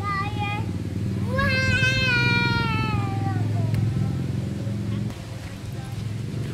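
A toddler's high-pitched voice: a short call, then a long drawn-out call starting about a second and a half in that rises and then slowly falls over about two seconds.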